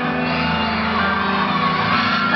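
Live concert music playing an instrumental passage of held notes between sung lines, with an audience shouting and cheering over it in a large hall.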